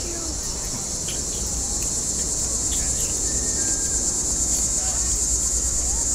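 Insects chirring outdoors: a continuous high-pitched buzz with a fast, even pulse, growing a little louder toward the end.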